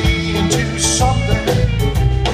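A live country band playing, with strummed acoustic guitar, electric guitar, bass and drums keeping a steady beat.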